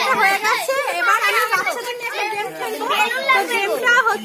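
A woman talking, with children's voices around her.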